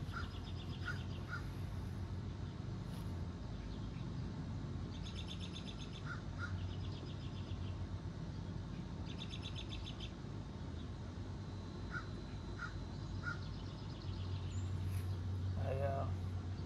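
Birds calling: short calls in groups of two or three, and a rapid trilled call repeated three times, over a low steady hum.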